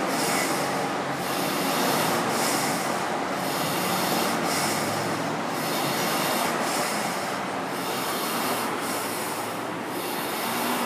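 Air-resistance rowing machine's caged fan flywheel whirring under steady rowing, the whoosh surging and easing in a regular rhythm about once a second.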